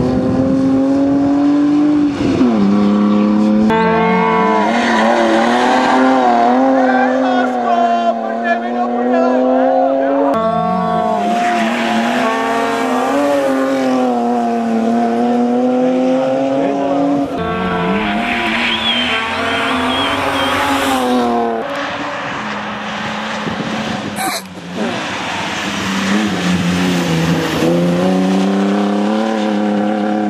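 BMW 3 Series rally car's engine revving hard, its note rising and falling as it accelerates, shifts and lifts through a sequence of passes. The sound breaks off and picks up again abruptly several times.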